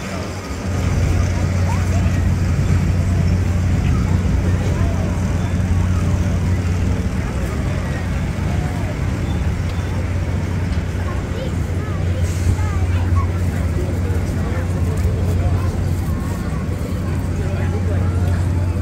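Chatter of a crowd of passers-by over a steady low mechanical hum that sets in about a second in.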